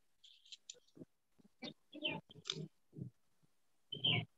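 A few faint, short voice-like sounds, grunts or murmurs picked up over an open call microphone, with small brief noises between them.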